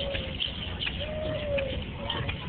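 Music: two long, pure held notes, each dipping slightly in pitch at the end, over a steady low background of crowd noise and faint scattered clicks.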